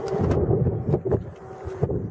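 Wind buffeting the microphone outdoors, with a few sharp clicks as the rear liftgate of a 2012 Ford Edge is unlatched and swung open. The clicks come near the start and about a second in.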